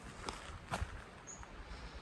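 Two soft footsteps on dirt and grass as someone walks, over a quiet outdoor background.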